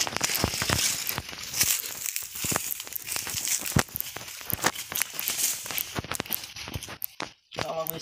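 Footsteps on dry leaf litter and dry banana leaves rustling and crackling as people walk through a banana grove, a dense run of irregular crackles that drops away briefly near the end.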